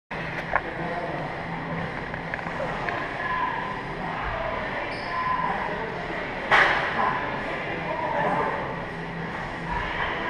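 Gym room sound: indistinct background voices over a steady low hum, with a sharp clank of metal weights about six and a half seconds in.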